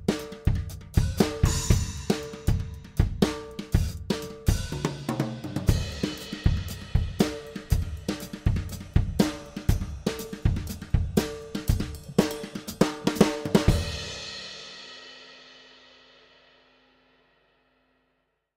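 Drum kit played with plastic-dowel rods, which sound softer than ordinary drumsticks. It is a steady groove of regular strokes that ends about 14 seconds in on a cymbal hit that rings out and fades away.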